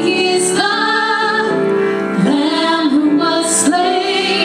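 Three women singing a worship song together into microphones, in long held notes, with a sharp hissing 's' about half a second in and again near the end.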